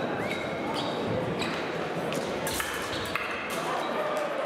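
Echoing background of a large sports hall at a fencing competition: a murmur of voices, with scattered short high-pitched squeaks and sharp clicks.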